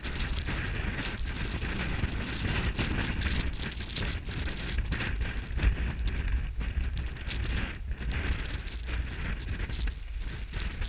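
Strong wind buffeting an action-camera microphone with a low rumble, over the continuous hiss and scrape of skis sliding on wind-blown snow.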